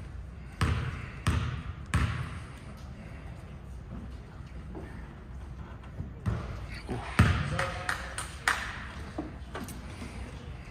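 A basketball bounced three times on a gym floor, about two-thirds of a second apart, as a player dribbles at the free-throw line before shooting. Later comes a louder knock among scattered voices in the gym.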